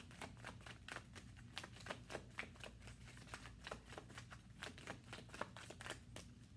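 A tarot deck being shuffled by hand: a quick, irregular run of soft card clicks and flicks, several a second.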